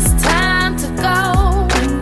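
Slow R&B pop song: a lead vocal holds notes with vibrato over steady bass, with a deep booming bass-drum hit about every second and a half.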